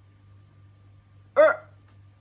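A woman's voice making one short, clipped syllable about one and a half seconds in, as in sounding out a single letter, over a faint steady hum.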